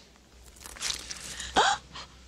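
Film soundtrack from a horror scene: a few hissing, crackling noises, then, about one and a half seconds in, a short loud sound that drops sharply in pitch.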